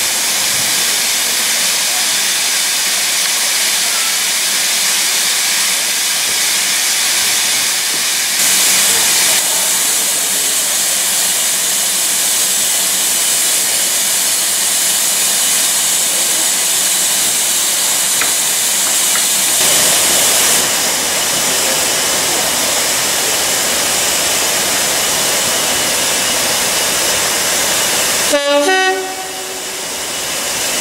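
Steady, loud hiss of steam from a railway steam locomotive standing nearby, changing in level at a couple of points. About a second and a half before the end, a short sudden sound with several stepped tones breaks in and the hiss drops away.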